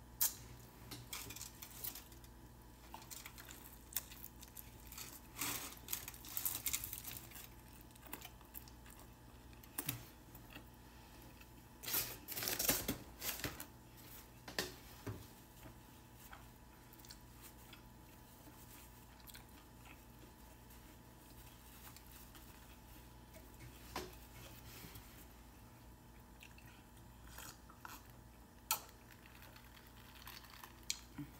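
A person chewing a burrito, with the foil wrapper rustling and crinkling now and then; the handling noise is busiest about twelve seconds in and thins out later, over a faint steady hum.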